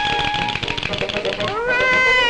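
Early cartoon soundtrack music with a fast, rattling run of rapidly repeated notes. About a second and a half in, a rising, held cartoon cry of "hooray" begins.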